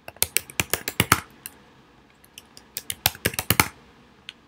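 Typing on a computer keyboard: two quick runs of keystrokes, each about a second long, with a pause between, as two short words are typed.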